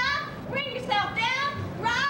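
A woman's voice giving short, high-pitched cries that each slide down in pitch, about two a second, without clear words.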